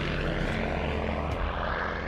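North American P-51D Mustang in flight: the steady drone of its Merlin V-12 engine and propeller.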